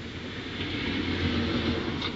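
A low, steady background rumble with a faint hiss above it, growing gradually louder.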